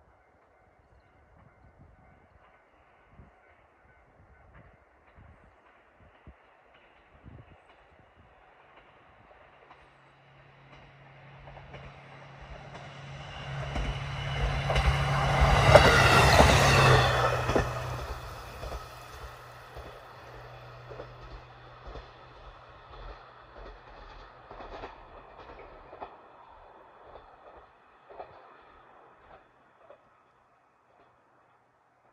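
A diesel railcar passing close by. Its engine hum and wheel noise build over several seconds, peak about halfway through, then fade, with wheel clicks over the rail joints trailing off as it runs away.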